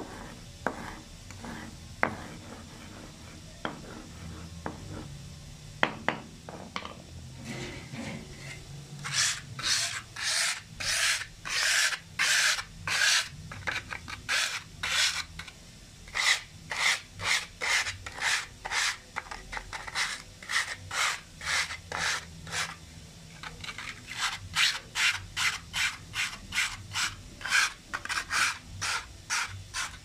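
A flat piece of wood rubbed back and forth over crushed pyrite on a concrete tile floor, grinding the rock to fine powder. After a few scattered taps and knocks, rhythmic rasping strokes start about nine seconds in, about two a second, with a short break near the middle.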